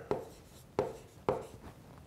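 Stylus handwriting on a tablet screen: three sharp taps as the pen tip touches down for the letter strokes, the first near the start and two more around a second in.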